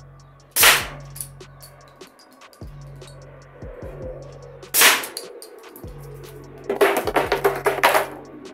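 Two sharp shots from a .50 calibre CO2 less-lethal pistol, about four seconds apart, each hitting a wooden target board. Near the end comes a quick run of clattering knocks as the board topples onto the paving. A low, steady bass line of music runs underneath.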